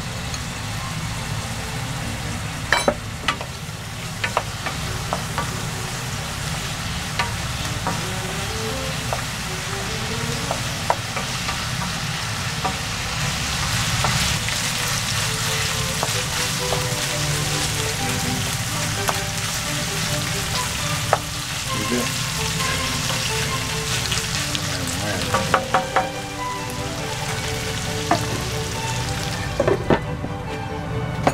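Sliced new potatoes and ground pork sizzling steadily in a frying pan in a soy-based sauce, with a wooden spatula stirring and now and then knocking against the pan. A few knocks near the end as a lid is set on the pan.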